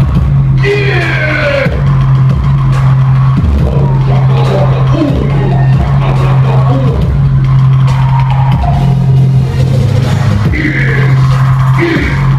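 Loud house music played by a DJ through a club sound system, with a heavy, steady bass line and a drum beat; the bass drops out for a moment a few times.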